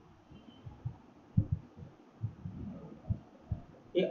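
A handful of soft, irregular low thumps from a stylus tapping and writing on a tablet screen.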